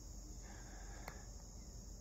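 Faint, steady, high-pitched insect chorus of crickets or similar insects, with a single sharp click about a second in.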